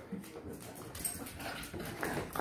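A dog making a few short, faint vocal sounds while asking its owners for attention, as it does when it wants food.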